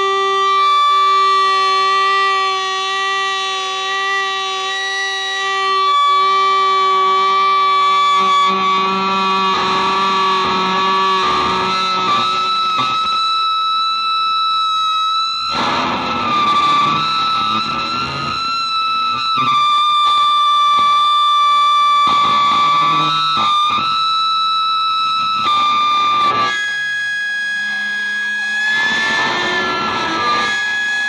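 Improvised solo electric guitar run through effects pedals: long held, layered tones that shift in pitch every few seconds, broken by dense distorted noise about halfway through and again near the end.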